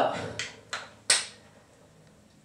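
Three sharp metallic taps in the first second or so, each ringing briefly: clogging-shoe taps striking a hard floor as the dancer shifts her feet.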